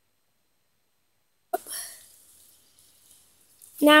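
Dead silence for about the first second and a half, then a sudden short breathy vocal burst from a person that fades into faint hiss within half a second. A child's voice starts speaking right at the end.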